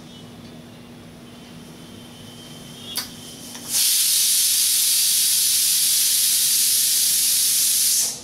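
A sharp click about three seconds in, then a loud, steady hiss that starts suddenly about a second later and stops just as suddenly.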